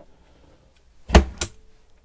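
A wardrobe door being pulled open: two sharp knocks about a quarter second apart, a little over a second in.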